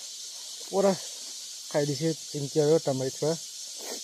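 A steady, high-pitched drone of jungle insects, with a man's voice speaking in short phrases over it about a second in and again through the middle.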